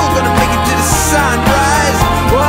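Jazz-tinged band music in an instrumental passage: a lead melody that slides between notes over a steady bass and full band.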